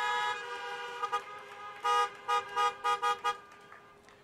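Many car horns honking together as applause. A held chorus of horns dies away in the first moments, followed by a scattering of short toots.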